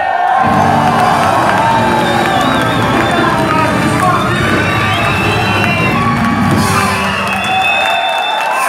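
Concert audience cheering and shouting, with the band's music still sounding underneath until it drops away near the end.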